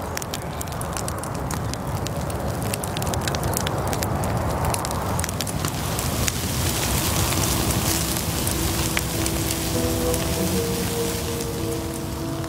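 Wood bonfire crackling and popping steadily, with the rush of the flames underneath. Steady music tones come in faintly about three-quarters of the way through.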